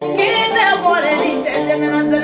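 Singing with a wavering, ornamented vocal line over music with steady held notes in the accompaniment.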